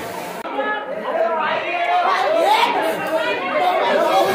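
Crowd chatter: many voices talking and calling out over one another, with no single clear speaker. It grows louder about a second in.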